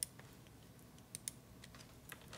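A few faint, scattered clicks of a computer keyboard and mouse, about five in two seconds, over quiet room tone.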